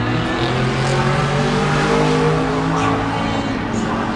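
Race car engines running on the track, one note drawn out with its pitch slowly falling as the car passes, then another, over a low rumble of wind on the microphone.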